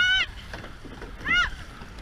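Surfboat crew rowing through surf: a steady low rumble of wind and water on the boat-mounted camera. Two short, high shouts rise and fall over it, one right at the start and one a little past halfway.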